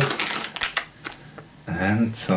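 Soft plastic wet-wipes packet crinkling as it is handled for about half a second, then a couple of light clicks.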